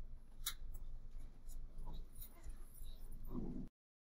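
Computer mouse clicks over a faint room hum: a sharp click about half a second in and another about a second later, with a few fainter ticks. A soft rustle follows near the end, just before the audio cuts off dead as the recording stops.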